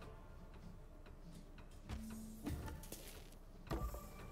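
Quiet sound effects from an online slot machine game as the reels spin: faint ticks and clicks, a short low tone about two seconds in, and a soft thump near the end.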